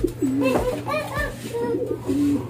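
Racing pigeons cooing in their wire loft cages, several gliding, overlapping coos one after another.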